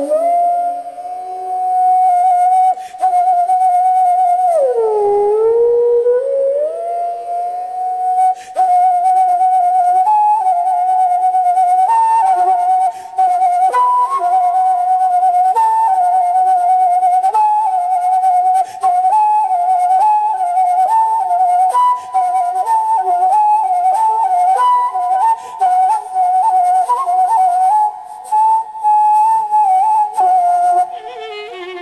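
Carnatic bamboo flute playing a solo raga passage: a long held note, a deep downward slide about five seconds in, then quicker ornamented phrases with rapid turns between neighbouring notes, over a steady drone.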